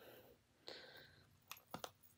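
Near silence with a few faint clicks of a phone case being pressed and snapped onto a smartphone, two close together near the end, after a brief soft rustle.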